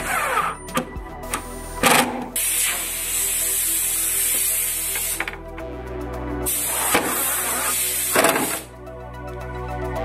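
Cordless drill-driver driving screws through steel corner brackets into a pine table apron, in two runs of about three seconds and two seconds, over background music.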